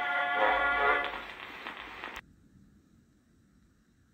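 Early acoustic cylinder record played through a phonograph horn: the band accompaniment plays, fading down, then cuts off suddenly about two seconds in, leaving only a faint hiss.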